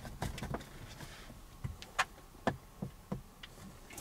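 A handful of sharp clicks and knocks, mostly in the second half, as a dashboard-mounted smartphone holder is handled and the phone in its clamp is turned from landscape to upright.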